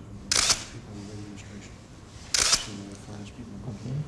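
Still cameras firing for a posed photo, twice about two seconds apart, each a short, loud burst of shutter clicks. Low voices murmur underneath.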